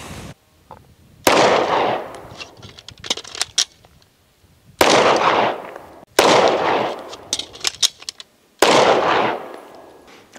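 Four handgun shots fired at uneven intervals, each trailing off in about a second of echo, with a few faint clicks between shots.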